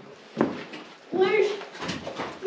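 People's voices in a small rock shelter: a short laugh, then about a second in someone talking.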